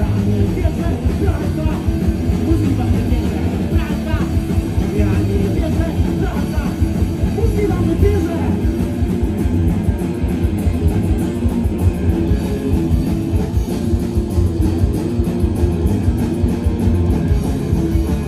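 Punk rock band playing live: electric guitar, bass guitar and drums at a steady driving beat, heard loud from within the crowd.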